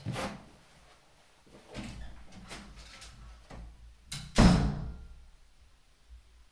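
Soft handling knocks and scuffs, then one loud thump about four seconds in that rings out briefly, like a door or drawer being shut.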